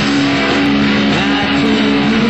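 Stratocaster-style electric guitar playing held, sustained notes, with a couple of notes bent up and down in pitch about halfway through.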